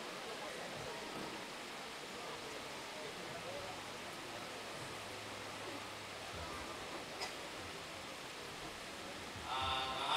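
Steady hiss of room noise through the live-stream microphone, with faint murmuring voices and a single click about seven seconds in; clear speech starts just before the end.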